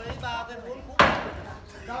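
A single sharp wooden knock about a second in, a blow struck on the hardwood frame of a stilt house as it is being dismantled, with a short ringing tail.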